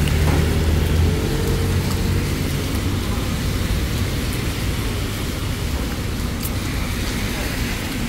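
Steady hiss of heavy rain mixed with passing road traffic, with a low humming voice in the first couple of seconds.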